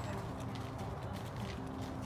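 Horses' hooves clopping at a walk on a gravel trail, a handful of irregular sharp clops.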